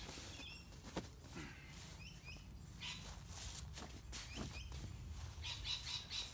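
Clicks, knocks and fabric rustling as the polyester seat of a lightweight aluminium-framed camp chair is worked onto the frame's pole ends, with a sharp click about a second in. Small birds chirp in the background.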